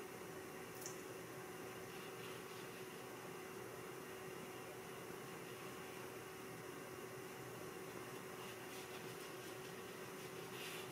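Quiet room tone: a steady hiss with a faint low hum, and one small tick about a second in.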